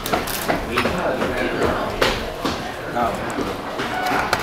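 People talking at a restaurant table, with a few light ticks.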